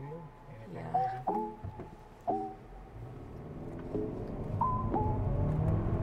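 Background music with a light melody, over the 2.5-litre turbo engine of a 2024 Hyundai Santa Fe accelerating hard in Sport mode, its sound building from about halfway through as the 8-speed dual-clutch transmission shifts up.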